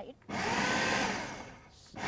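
Food processor motor pulsed on once for about a second and then winding down, coarsely chopping chickpeas, corn and herbs into a chunky burger mix.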